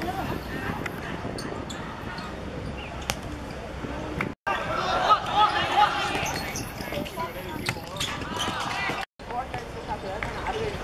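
A futsal ball being kicked and bouncing on a hard outdoor court, with sharp thuds among the players' scuffling feet and shouted calls a little after the middle. The sound drops out for an instant twice.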